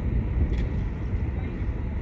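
Steady low rumble aboard a research boat on open water, the hum of the vessel mixed with wind on the microphone.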